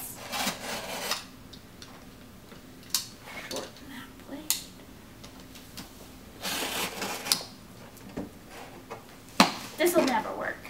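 Box cutter slicing through packing tape and cardboard on a shipping box, in short irregular scraping strokes with scattered clicks. A sharp knock near the end is the loudest sound.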